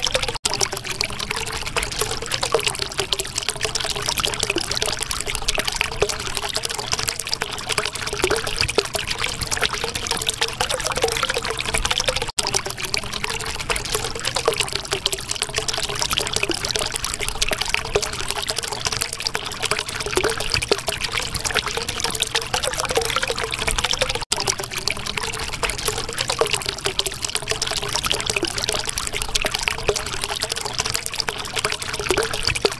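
Water flowing and trickling steadily, with a wavering gurgle running underneath. Three very brief dropouts break it, about twelve seconds apart.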